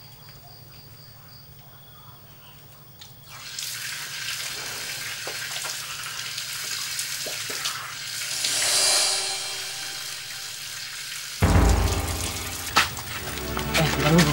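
Water running from a wall tap and splashing as a man washes under it. It starts about three seconds in and swells in the middle. About eleven seconds in, a sudden low boom brings in background music.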